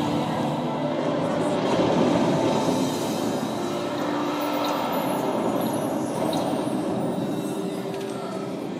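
Soundtrack of a pavilion projection show, played over speakers and recorded in the hall: a steady, dense wash of sound with held tones running through it, easing a little toward the end.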